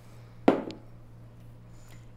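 A glass bottle set down on a wooden countertop: one sharp knock about half a second in, with a brief ring and a faint click right after.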